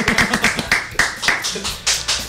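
Irregular hand claps mixed with men's laughter.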